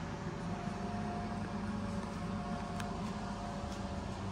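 Steady mechanical hum and hiss of room tone, with a thin steady higher whine running through it and a faint tick about three-quarters of the way through.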